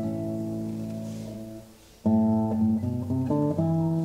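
Two classical guitars playing a duet: a chord rings and slowly dies away, a brief pause comes about two seconds in, then a new phrase of plucked notes begins.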